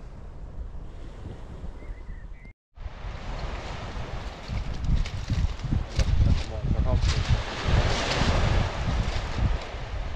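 Wind buffeting the microphone over the sound of surf on a shingle beach. The sound cuts out for a moment about two and a half seconds in, then comes back with stronger, uneven gusts and a swell of surf near the end.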